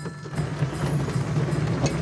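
A small ride-on train rolling along under power, with a steady low drone from its drive and running gear.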